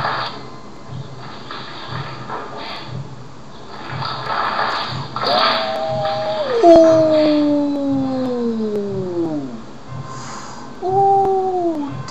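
A man's long, falling groan of disgust, his voice sliding down in pitch over about four seconds, followed by a shorter falling groan near the end, over background music with a steady beat.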